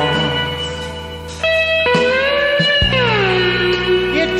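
Live rock music in an instrumental passage: a guitar plays long held notes that slide in pitch over a sustained low chord. A fresh note is struck about a second and a half in, and the line glides downward near the three-second mark.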